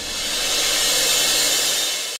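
A dramatic whoosh sound effect in the soundtrack: a hissing noise swells up over the first second and then holds.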